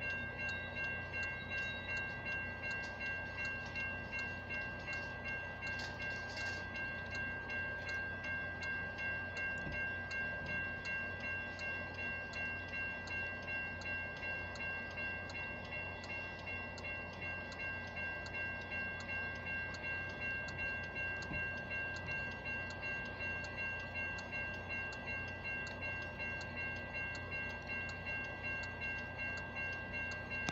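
Railroad grade-crossing bell ringing steadily, about two strikes a second, over the low rumble of a Metra bilevel commuter train rolling past.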